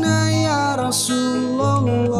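A man singing a sholawat, an Islamic devotional song, over instrumental backing, his melody gliding between long held notes.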